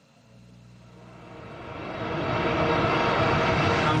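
A steady mechanical drone with a hiss over it, fading in from near silence over the first two seconds and then holding steady.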